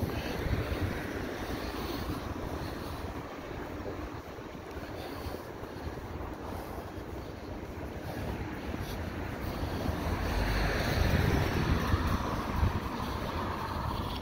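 Wind rumbling on the microphone over steady city street noise, swelling a little about ten seconds in.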